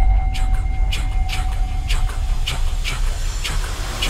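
Trailer sound design under the glowing-tattoo shot: a deep, steady rumble with a held high tone and sharp crackles two or three times a second, swelling into a loud rush at the very end.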